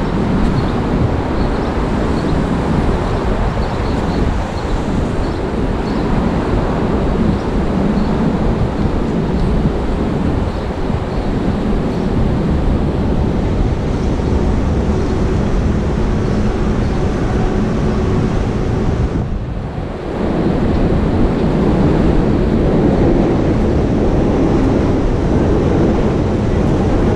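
City street traffic noise: a steady rumble of passing vehicles, with wind on the microphone. The noise dips briefly about three-quarters of the way in, then comes back a little louder.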